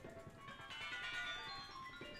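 Percussion ensemble music: a cluster of sustained, bell-like ringing metal tones swells in about half a second in, over scattered low drum strokes.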